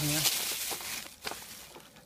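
Plastic packaging and cable rustling as a thumb throttle is lifted out of a cardboard box of parts, dying away about a second and a half in.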